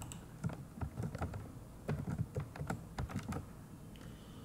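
Computer keyboard typing: a quick run of keystroke clicks, busiest through the middle and thinning out near the end.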